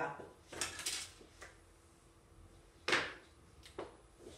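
Objects being handled on a desk: a few soft clatters in the first second, then a sharp knock about three seconds in and a smaller one near the end.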